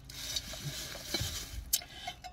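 Faint rustling and handling noise as items are moved around, with a sharp click near the end.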